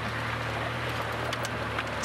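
Open safari vehicle's engine running steadily with a low hum under a hiss of wind and tyres on a dirt track, with a few faint rattles in the second half.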